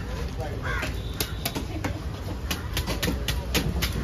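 A large steel fish-cutting knife scraping the scales off a big fish on a wooden block. It makes a series of short, sharp scraping strokes, most of them after about the first second, at several a second.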